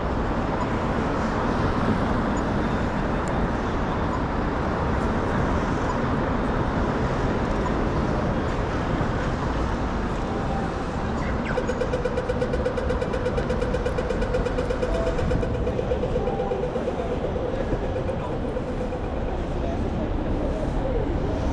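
Busy city street ambience with a steady traffic hum and passing voices. A little past halfway a pedestrian crossing signal gives a rapid electronic ticking for about four seconds.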